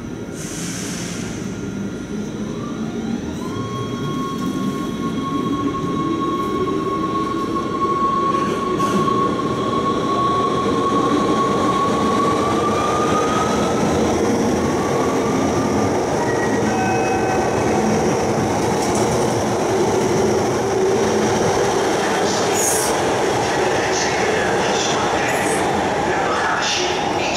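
Six-car NS Sprinter Lighttrain (SLT) electric multiple unit pulling away and accelerating through an underground station. Its traction motors whine in steady climbing tones that step up in pitch, over the rising rumble of the carriages passing. A few sharp clicks come near the end.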